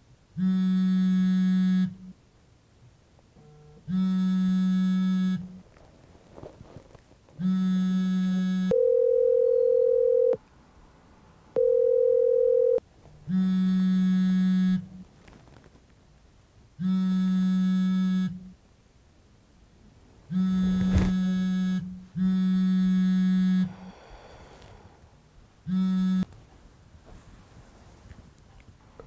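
A mobile phone buzzing on vibrate against a wooden nightstand, in about eight buzzes of a second and a half each with short pauses between: an incoming call going unanswered. Two cleaner, higher steady tones sound between the buzzes near the middle.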